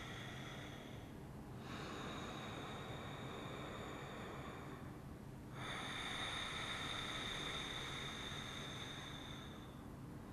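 Ujjayi breathing: slow, drawn-out breaths through a narrowed throat, each a quiet, steady hiss lasting several seconds, with short pauses between them.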